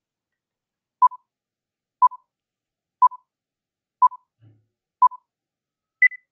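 Countdown timer sound effect: five short beeps of one pitch, one a second, then a single higher-pitched beep at the end as the count runs out.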